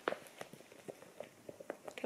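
Crinkled patent-leather handbag, a Bottega Veneta Mini Jodie, squeezed and flexed in the hands: a run of small, irregular crackling clicks, faint between them, the bag ASMR.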